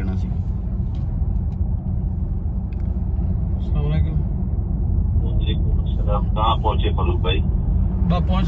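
Steady low road and engine rumble inside the cabin of a moving Mercedes SUV.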